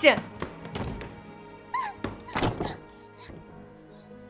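An interior door slammed shut with one heavy thunk about two and a half seconds in, after a few lighter knocks and scuffs of a struggle at the door. Soft background music runs underneath.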